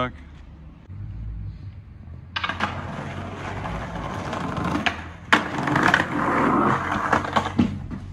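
Skateboard wheels rolling over rough paving, starting with a sharp clack a bit over two seconds in and carrying many small clicks. A second sharp clack comes about five seconds in, and the rolling stops shortly before the end.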